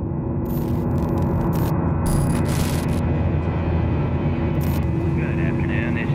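Steady airliner cabin drone at cruise, a low engine hum with several held tones, swelling in at the start. Over it come short bursts of glitchy, static-like hiss: several about half a second in, a longer one around two to three seconds, and one more just before five seconds.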